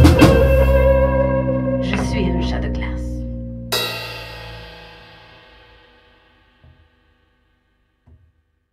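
A band with electric guitar hits its closing chord and lets it ring out, fading away over about six seconds. There is a sudden bright accent about three and a half seconds in, and then the song ends.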